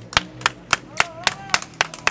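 One person clapping hands in a steady rhythm, about seven claps, roughly three to four a second.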